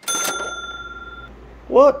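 A single bell-like ding rings out at the start and fades away over about a second, with a short rush of noise under its onset. A man starts speaking near the end.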